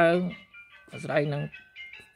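A voice talking over background music of high, held tones.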